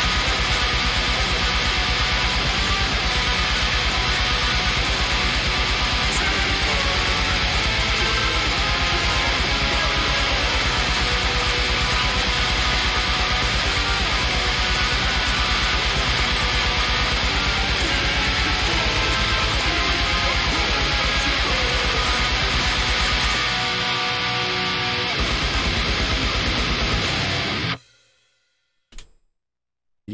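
Heavy metal played on a distorted electric guitar, a dense, fast riff over a rapid, even low beat. It stops abruptly about two seconds before the end, with a brief faint sound in the silence.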